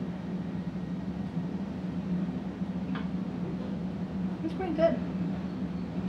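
Steady low hum of room noise, with a faint click about halfway through and a short murmured vocal sound near the end.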